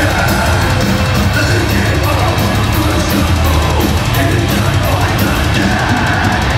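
Death metal band playing live, loud and dense: heavily distorted guitars and bass over fast, evenly pounding drums with cymbals, heard from the crowd.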